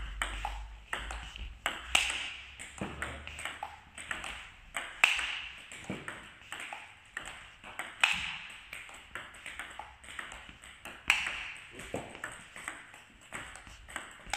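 Table tennis rally: a plastic ball clicking off bats and table in quick succession. A louder, sharper hit comes about every three seconds as the forehand, fitted with short-pimpled rubber, drives push balls flat.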